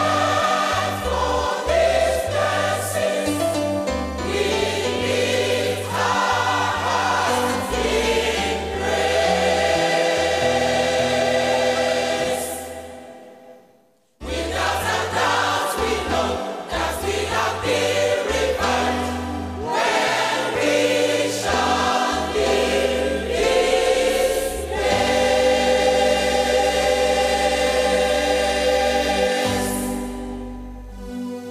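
Choir singing gospel music with instruments and bass. One song fades out about thirteen seconds in and the next starts abruptly right after.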